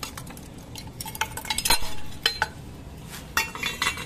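Steel clutch parts being handled: a clutch release fork and release bearing clinking and knocking against a pressure plate, a series of sharp metal clinks, some ringing briefly.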